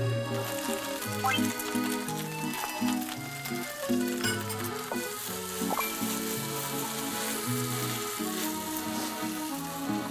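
Egg fried rice sizzling in a hot frying pan as it is stirred with a spatula, over background music.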